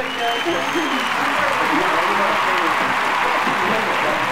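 A small group clapping, with voices talking and calling out over the clapping; the clapping builds about half a second in and keeps on steadily.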